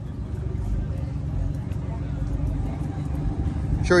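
Steady low rumble of vehicles around a parking lot, with faint voices in the background.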